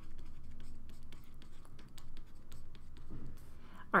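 Stylus writing on a tablet screen: a quiet, irregular run of small taps and scratches as handwritten words are drawn.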